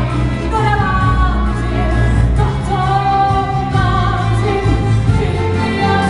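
A woman singing a musical-theatre ballad into a handheld microphone in long held notes, with a full orchestra accompanying her. It is heard from the audience seats.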